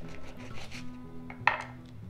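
Soft background music with long held notes, and one sharp knock about one and a half seconds in as a knife cuts through a lemon onto a wooden cutting board.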